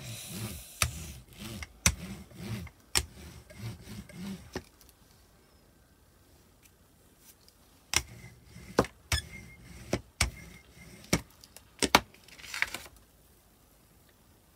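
A rubber brayer rolled back and forth over paper on a gelli plate to pull the paint off, a rhythmic rumble about twice a second mixed with sharp clicks. After a pause come more sharp clicks and knocks, then a short papery rustle near the end as the print is peeled up.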